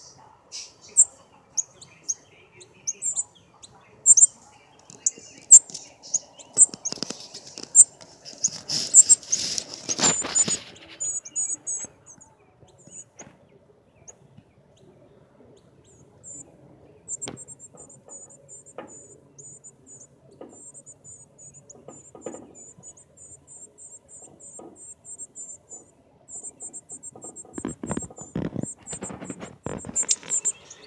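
Northern cardinals giving high, sharp chip notes, spaced about a second apart at first, then a fast, steady run of chips through the second half. A brief rustling noise comes about nine to ten seconds in, and again near the end.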